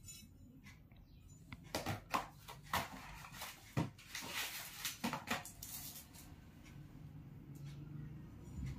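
Cardboard knife boxes and plastic packaging handled on a table: a string of sharp knocks and taps, with plastic rustling in the middle.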